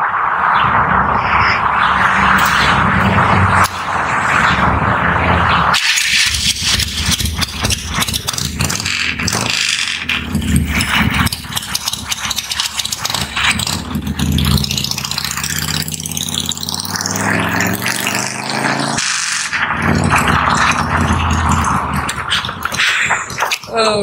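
Harley-Davidson motorcycle's V-twin engine running and being revved, its pitch rising and falling about halfway through.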